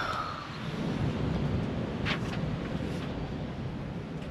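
Wind on the microphone: a steady low rumbling buffet with a faint hiss.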